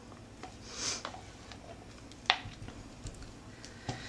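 Faint scraping and handling sounds of a spatula scraping thick soap batter out of a plastic cup onto a soap loaf, with one sharp click a little past halfway.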